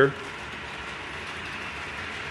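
Model train of bilevel passenger cars running on the layout's track: a steady, even rolling noise of wheels on the rails.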